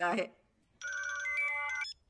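Mobile phone ringtone: a short electronic melody of a few steady notes lasting about a second, cut off abruptly.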